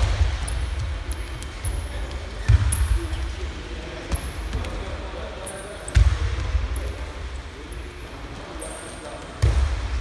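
Wrestlers' bodies landing on a padded wrestling mat: three heavy thuds a few seconds apart, each with a short low rumble after it, over background voices in a large gym.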